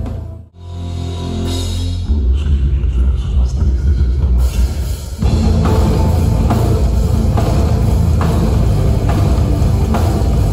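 Metal band playing live on stage: electric guitars, bass and drum kit. The sound dips briefly about half a second in, then the full band comes back in, with evenly spaced drum hits driving it from about five seconds in.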